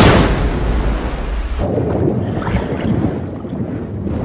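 Film sound effect of a flash flood: a loud rush of churning water that is strongest at the start, then turns duller and lower about a second and a half in.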